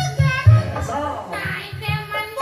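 A man singing a children's song in a high, child-like voice over a live Sundanese band: regular kendang drum beats and a keyboard.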